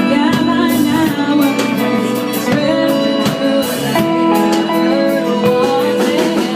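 Live band playing a country-folk song: strummed acoustic guitar, pedal steel guitar and drums, with a woman singing.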